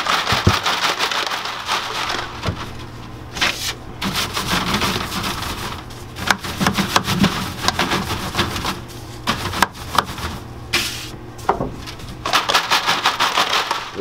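Candy cream eggs being raked and brushed through cornstarch in a wooden starch tray: repeated bouts of rubbing strokes, with light clicks of the eggs knocking against each other and the wood.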